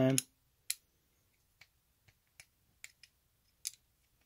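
Light, irregular clicks of a hex driver tip seating in and turning small tapered screws in a plastic cush drive housing, as the screws are lightly torqued one by one; about seven faint ticks spread over the few seconds.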